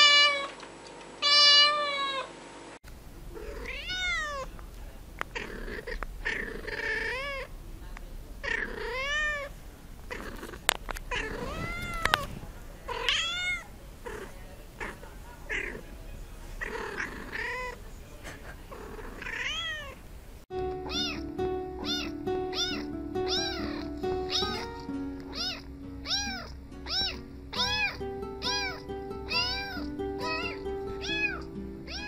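Domestic cats meowing in a run of short clips. First a kitten gives one loud meow just after the start. Then another cat gives a long series of drawn-out meows that rise and fall in pitch. For the last third, quick short meows come over background music.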